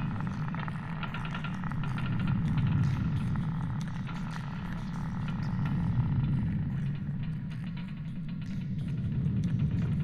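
Layered sci-fi soundscape: a low rumble that swells and fades every few seconds, with scattered clicks and crackles above it and a faint tone in the first few seconds.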